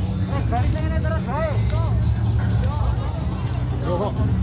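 Outdoor parade crowd ambience: people's voices with a steady low rumble underneath.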